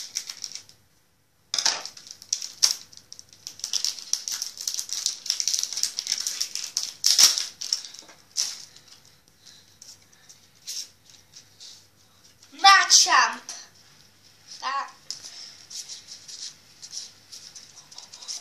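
Foil wrapper of a Pokémon trading-card booster pack crinkling and crackling as it is cut open with scissors and the cards are pulled out, starting about a second and a half in. A child's voice breaks in briefly about thirteen seconds in.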